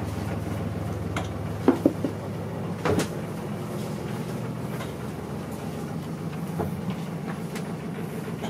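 40 hp Yanmar marine diesel engine running steadily, heard as a low hum from inside the boat's cabin, which shows how loud the engine is below deck. A few light knocks come about one to three seconds in.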